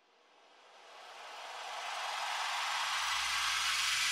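Swooshing sound effect for an animated logo: a hiss-like rush of noise that fades in from silence about half a second in, swells over the next two seconds, then holds steady.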